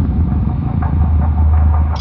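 Title sound effect of a heavy spiked portcullis rising: a steady low rumble with a run of light mechanical ticks through it.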